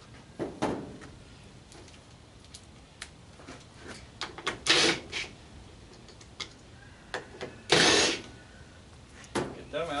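Cordless drill run in short bursts backing out the quarter-inch hex screws on a clothes dryer's sheet-metal control panel, three bursts with the loudest near the end, mixed with clicks and knocks of the metal panel.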